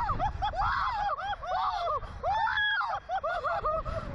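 Two riders on a slingshot ride screaming and laughing in many short rising-and-falling cries, over a steady rush of wind on the ride's on-board microphone.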